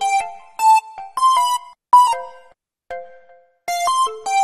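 A bright, bell-like software-synth melody played back alone from an FL Studio piano roll at 155 BPM, with no drums. Short plucked notes with many overtones each fade quickly, and there is a brief pause a little past halfway.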